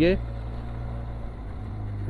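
Benelli TRK 502X motorcycle's parallel-twin engine running at a low, steady pitch under load on a steep uphill climb.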